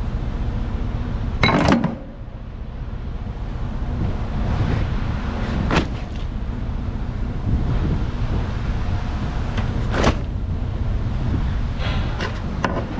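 Ratchet straps and rolled tarps being handled and set down on a flatbed trailer deck: three sharp knocks and clanks, the loudest near the start, over a steady low rumble.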